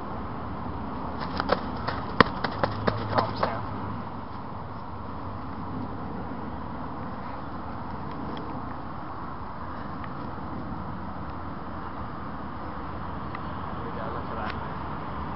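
Handling noise: a quick run of sharp clicks and knocks for about two seconds just after the start. After that there is only a steady low background rumble.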